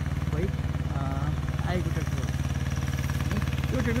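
Mahindra Jivo 245 DI mini tractor's two-cylinder diesel engine running steadily with a low drone while pulling a disc harrow.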